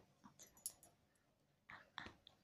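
A baby's faint mouth clicks and soft breathy sounds, with one short vocal sound near the end.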